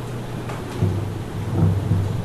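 Steady rumbling hiss with a low hum underneath: the background noise of a room recording made through a microphone, with a couple of faint low bumps partway through.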